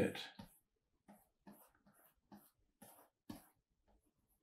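Faint, short scratches of a stylus drawing strokes on a digital drawing tablet, about seven or eight in a row, roughly two a second.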